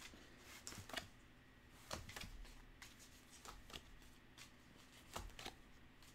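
Faint rustles and light clicks of a stack of square cardboard game cards being handled and sorted by hand, a few soft taps spread across the moment.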